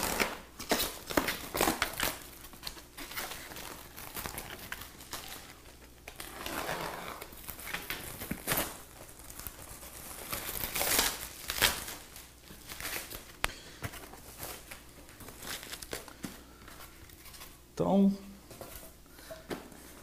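Plastic shrink wrap being slit with a utility knife and pulled off a styrofoam box, crinkling and tearing in irregular bursts throughout. A brief voice is heard near the end.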